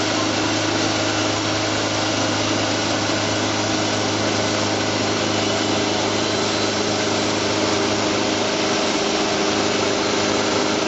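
Wood-Mizer portable band sawmill running steadily, its motor drone mixed with the band blade cutting through a larch log. The pitch and level hold even, with no change in load.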